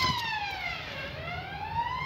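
An emergency-vehicle siren wailing: its pitch falls to a low point about halfway through, then climbs again.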